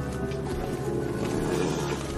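Background music with a horse vocalising over it, the animal sound thickening from about half a second in.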